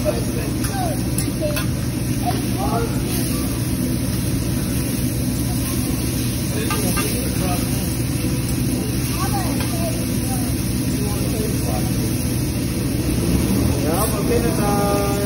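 Restaurant ambience around a teppanyaki griddle cooking steak and chicken: a steady low rumble and hiss, with faint, indistinct chatter of diners in the background.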